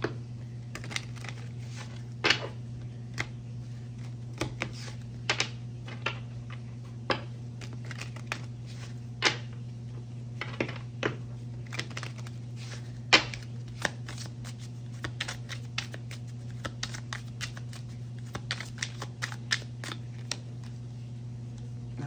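A deck of oracle cards being shuffled by hand, with irregular sharp snaps and taps of the cards, a few of them louder. A steady low hum runs underneath.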